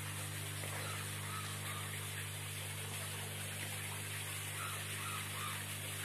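A machine running steadily: a low electric hum with an even hiss over it. A few faint, short chirps come through near the start and again about five seconds in.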